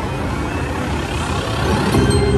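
Casino floor din: a steady mix of slot machine sounds and crowd noise, with a faint rising sweep in the second half.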